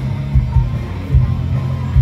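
Live band music with guitar played through a stage PA and heard from within the crowd. The heavy bass pulses in a loose beat.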